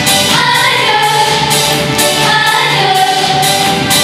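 A group of young girls singing a song together into microphones, with musical accompaniment and long held notes.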